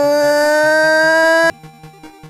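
Background music with a loud, long held note whose pitch dips slightly and then rises, cutting off suddenly about one and a half seconds in. A soft repeating bass line continues underneath.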